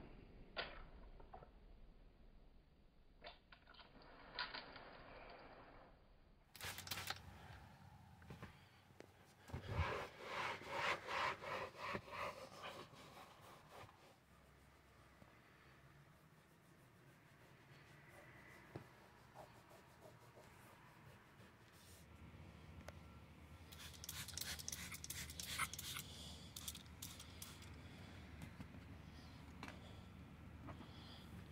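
Microfiber towel wiping and scrubbing the leather seats and vinyl door panel inside a car, faint. About ten seconds in there is a run of quick scrubbing strokes, about three a second, and a second stretch of rubbing comes near the end.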